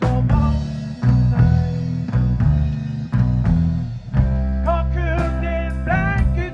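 Live rock band playing a song on electric guitars, bass guitar and drum kit, with steady drum hits under the bass and guitar lines.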